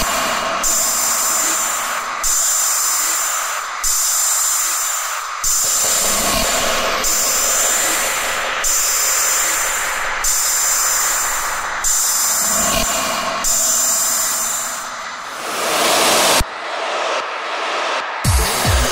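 Electronic music: a hiss-heavy, noisy synth passage that restarts in even sections about every 1.6 seconds, with little bass. Near the end a noise swell rises and cuts off suddenly, leaving a short sparse gap.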